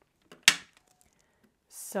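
A single sharp tap about half a second in, with a couple of faint clicks just before it, as craft tools and the card are handled on a cutting mat.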